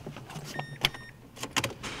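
Ignition key and dangling key ring clicking and jingling as a 2012 Mazda3 is keyed on to start, with a few short high electronic beeps from the car.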